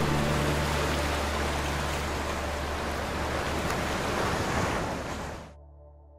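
Outro logo sting: a loud rushing noise over a low steady hum, cutting off sharply about five and a half seconds in and leaving soft sustained tones fading away.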